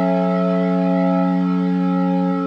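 Roland GR-33 guitar synthesizer voice, triggered from a Godin LGX-SA's 13-pin pickup, holding one long steady synth note with no new attack.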